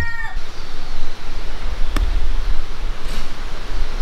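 The tail of a rooster's crow falling away in the first moment, then a single sharp click of a golf club striking the ball about two seconds in, heard faintly from a distance over a steady low rumble.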